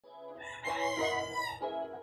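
A rooster crowing once, a single call of about a second that falls in pitch at its end, with soft music underneath.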